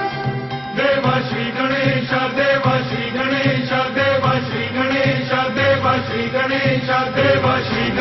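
Devotional chant to Ganesha sung by voices over a backing music track, the singing coming in about a second in after sustained instrumental tones.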